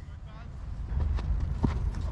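A cricket bowler's running footsteps during his run-up, a few soft thuds on grass and turf close by, over a steady low rumble.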